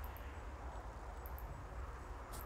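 Faint, steady low rumble of traffic on a nearby highway.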